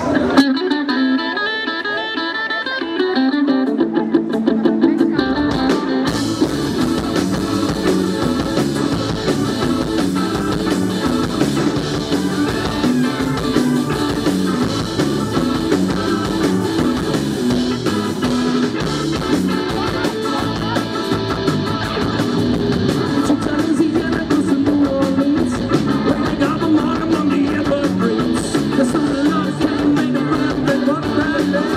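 Live rock band playing an early rock-and-roll style number. Electric guitar plays alone at first, bass guitar joins about three seconds in, and drums with cymbals bring in the full band at about six seconds.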